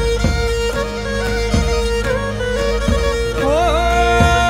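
Pontic lyra (kemenche) bowed over a steady drone, playing a traditional Pontic tik dance tune. A daouli bass drum strikes a deep beat about every 1.3 seconds, three times.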